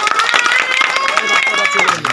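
A person's long, high-pitched held call, rising slightly in pitch and breaking off near the end, over a scatter of sharp clicks.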